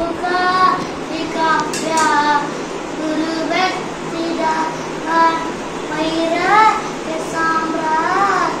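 A child singing a slow devotional melody in long, gliding phrases, with some notes rising and falling.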